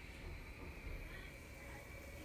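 Quiet kitchen room tone: a faint low hum with a thin, steady high-pitched whine and no distinct sounds.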